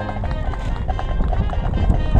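High school marching band playing: brass and woodwinds in short, repeated rhythmic notes over the drumline, with heavy bass drum hits near the end.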